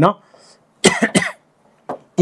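A man gives a short cough in two quick bursts about a second in, between stretches of his own speech.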